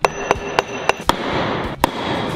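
A series of sharp knocks, about three a second, over a faint ringing tone during the first second, then two louder single knocks.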